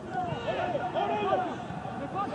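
Footballers shouting and calling to each other during play, several short raised voices with no crowd noise behind them.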